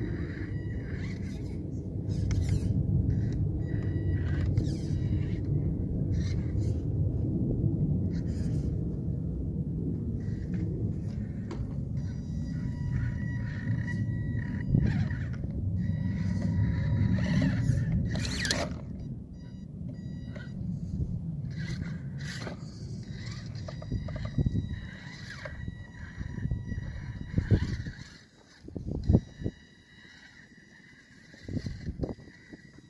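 Electric motor and geartrain of a scale RC rock crawler whining as it crawls over rock, with tyres scraping and the odd click, over a steady low rumble. The sound drops away near the end, leaving a few sharp knocks.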